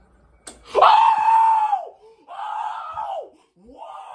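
A woman screaming in three long, high cries, each falling in pitch at its end, the first the loudest; a short sharp click comes just before the first.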